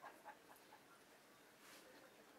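Near silence: quiet room tone, with a faint soft hiss shortly before the end.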